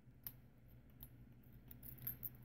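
Near silence, with a few faint short clicks from a brass key and a padlock being handled.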